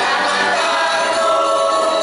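Live Valencian folk bolero: a choir of voices singing sustained notes over a rondalla of strummed and plucked guitars and lutes.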